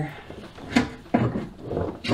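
Oil pan knocking and scraping against the car's underside as it is wiggled free from beneath the engine, with one sharp knock about three-quarters of a second in.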